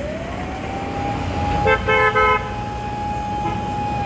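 Road traffic with vehicle horns: a long, steady siren-like horn tone that rises in pitch at the start, holds and then falls away, and a horn beeping in quick short pulses about two seconds in.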